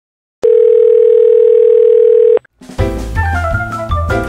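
A single steady electronic telephone tone sounds for about two seconds and cuts off abruptly. Moments later, lively piano music with drums begins.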